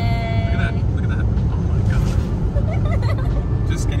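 A moving car's steady low road and engine rumble heard from inside the cabin. A drawn-out voice trails off in the first second.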